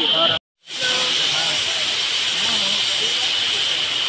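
Steady high-pitched drone of cicadas in dry forest, like a continuous hiss, with faint distant voices beneath it; all sound cuts out for a moment about half a second in.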